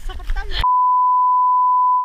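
A woman's laughing voice for the first half second, then a single steady high beep of one pure pitch cuts in sharply over it and holds to the end: an edited-in bleep tone.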